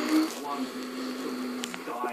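A child's voice humming one steady low note to imitate a bus engine while pushing a toy bus. The pitch steps down slightly just after the start and holds until shortly before the end.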